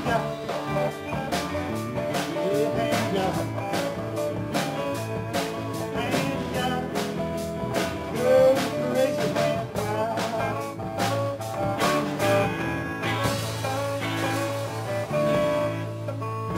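Live band playing: electric guitars with a bass guitar and drum kit, steady and full throughout, with bending guitar notes here and there.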